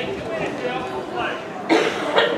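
A loud cough close to the microphone near the end, over low background talking.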